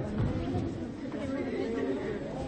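Chatter of a group of people: several voices talking at once, with no single speaker leading.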